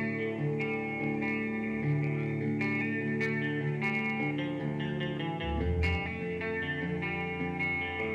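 A live band playing the start of a song: electric guitar and keyboard chords with drum and cymbal hits, and a deeper bass part coming in a little past halfway.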